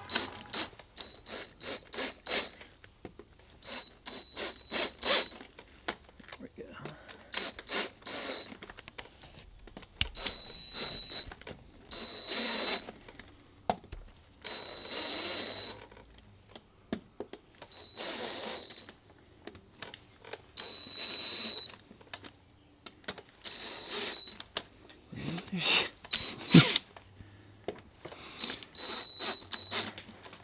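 Cordless drill driving a plug cutter into hard oak around a snapped-off screw, run in short bursts with a steady high whine. The cutter chatters and clicks as it skates, struggling to start its cut.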